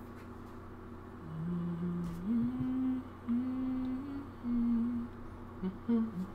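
A person humming a tune, starting about a second in, with held notes that step up and down in pitch.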